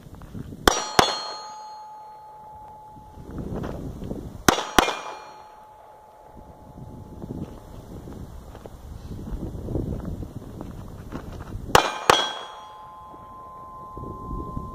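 Three pistol shots from a Ruger LCP II .380 pocket pistol, each followed a moment later by the clang of a steel target being hit, which rings on with a fading tone. The shots come about a second in, about four seconds later, and again near the end.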